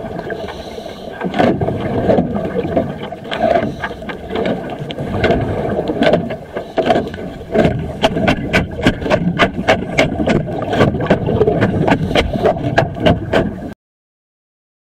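Underwater recording of barnacles being scraped off a ship's hull: rough, continuous scraping noise with many sharp clicks, which come quickly one after another in the last few seconds before the sound cuts off suddenly.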